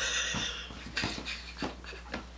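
A woman's stifled, breathy laughter: a high wheezy sound at first, then a few short puffs of breath.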